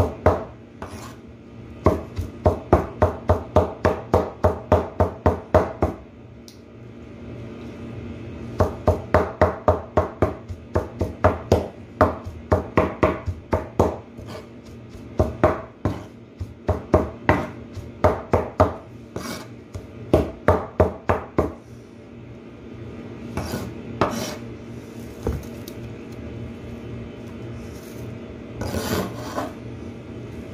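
Cleaver chopping jute mallow leaves on a cutting board: quick even strikes about four a second in runs of several seconds with short pauses between, fewer and more scattered strikes near the end.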